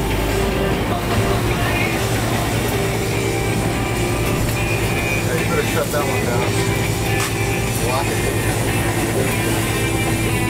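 Boat engines running steadily in gear, with music playing over them.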